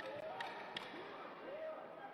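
Faint ringside sound during a kickboxing bout: distant shouting voices, with a few short thuds in the first second.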